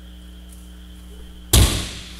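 An aikido partner thrown down from kneeling onto the tatami mats in seated kokyuho (suwari-waza kokyu-ho), landing with one sudden heavy thud about one and a half seconds in. A steady electrical hum runs underneath.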